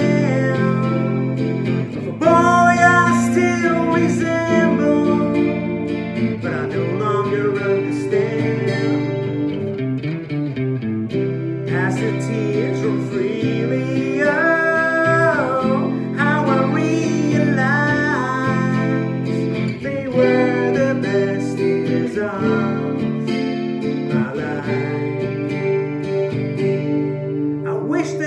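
A man singing along to his own strummed Epiphone acoustic guitar, with steady chords throughout and the vocal line rising and falling over them.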